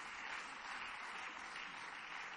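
Steady applause from members of a parliament chamber, an even wash of clapping.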